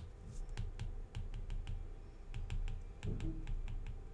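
Stylus tip tapping and clicking on an iPad's glass screen while printing a word in capital letters: an irregular run of sharp little clicks, about four or five a second.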